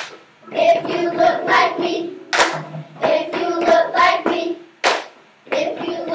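Children singing a chant in short phrases with brief gaps between them, and a single sharp hand clap about two and a half seconds in and another just before five seconds.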